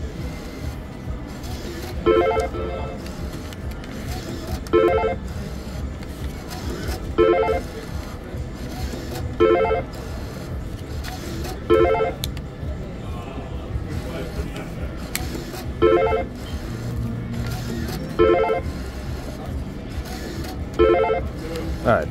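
Panda Magic slot machine's credit-up chime: a short electronic tone pattern sounding each time a $100 bill is accepted and credited, eight times at about two-second intervals with a longer pause in the middle, over steady background noise.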